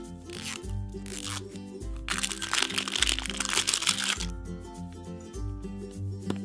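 Plastic film wrap crinkling and tearing as it is peeled off a plastic toy ball: two short crinkles, then a longer one of about two seconds in the middle. Light background music with a steady beat plays under it.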